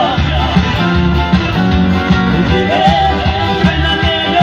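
Live Romani band music on electronic keyboard with a steady, driving beat. A wavering, ornamented melody line sounds at the start and comes back in after about two and a half seconds.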